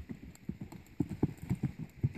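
Hoofbeats of a paint horse loping on soft arena dirt: a quick run of dull thuds that grows louder about a second in as the horse passes close.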